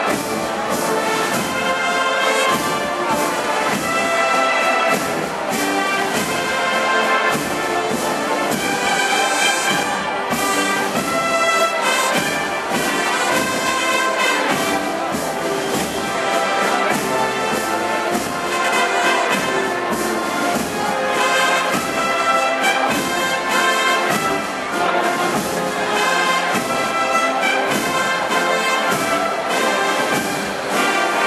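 A municipal wind band playing continuously, with trumpets and trombones prominent in the sustained brass chords.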